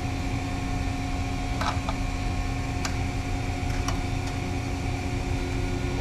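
Steady hum of industrial plant machinery, with low rumble and several constant tones, plus a few light clicks as wires are handled.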